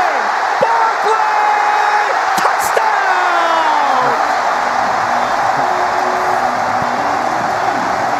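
Stadium crowd cheering loudly and steadily as a touchdown is scored, with individual yells rising and falling through the roar.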